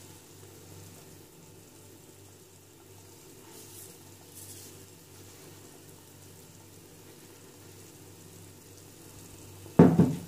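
Pot of onion, tomato and potato masala cooking in oil on the stove: a faint, steady sizzle over a low hum. A single sharp knock comes near the end.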